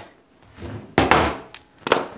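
A single thunk about a second in, as of an object set down on a wooden workbench, followed by a brief sharp click just before the end.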